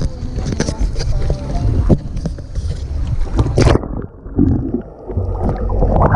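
Wind and handling noise on an action camera's microphone, then a splash about three and a half seconds in as the camera goes into the water; after that the sound is muffled underwater water noise with gurgling.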